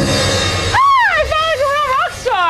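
Music with drumming ringing out, then about a second in a high-pitched voice cries out, rising and falling, and carries on.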